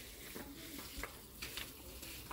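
Water from a plastic watering can's rose spout showering onto garden soil and seedlings: a steady hiss with a few light ticks.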